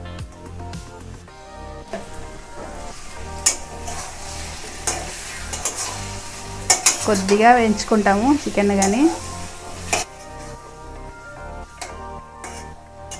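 Raw chicken drumsticks sizzling in hot oil and onion paste in an iron kadai while a metal spatula stirs and scrapes them, with a few sharp clicks of metal on iron. The sizzle swells from about two seconds in. A wavering, voice-like tone rises and falls for about two seconds past the middle and is the loudest sound.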